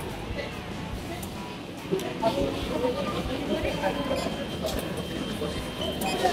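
Indistinct voices of people nearby in a busy hall, over steady background noise, with a faint steady high tone in the second half.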